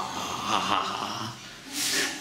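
A man's breathy laughter, with a louder breath near the end.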